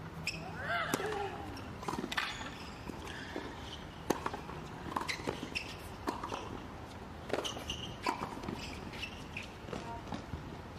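Doubles tennis point on a hard court: a serve, then a rally of sharp racket-on-ball strikes, roughly one every half second to a second, with some quick volley exchanges at the net.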